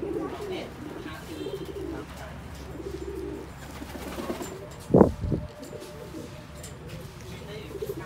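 Low, repeated bird calls, with one loud thump about five seconds in.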